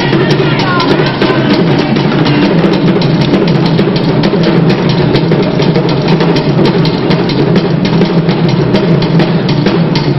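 Loud drum music, with many fast, dense drum strokes.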